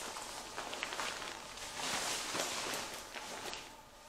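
Rustling and shuffling of a 3/4-collar (M69-style) nylon flak vest as it is lifted off a table and pulled on over the shoulders.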